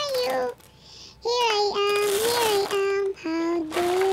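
A child's singing voice carrying a nursery-rhyme melody in long held notes, with a brief break about half a second in.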